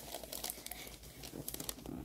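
Paper gift bag and tissue-paper wrapping of a gift basket rustling and crinkling faintly and irregularly as the basket is picked up.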